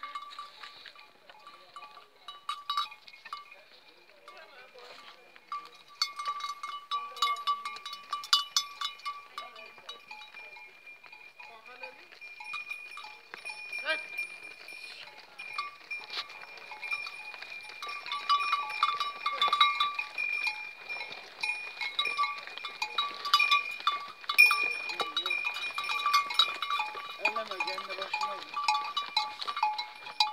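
Metal livestock bells clanking and ringing irregularly as the animals move about, the clanks growing busier and louder in the second half.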